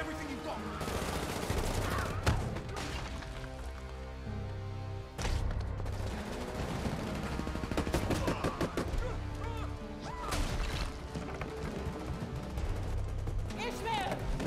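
Film action soundtrack: rapid gunfire and sharp impacts over a low, pulsing music score, with shouting voices breaking through now and then.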